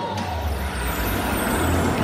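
A deep, steady rumble with a hiss over it that slowly falls in pitch, coming in just after the start. It is likely a show sound effect played over an arena sound system.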